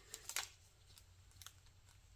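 Faint handling sounds of thin plastic film and wooden craft sticks: a little rustle near the start, then a couple of small ticks past the middle.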